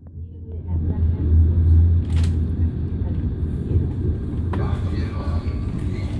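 Low rumble of a passenger train heard from inside the carriage as it rolls along the tracks, growing louder over the first second or so and then running steadily. A single sharp knock comes about two seconds in.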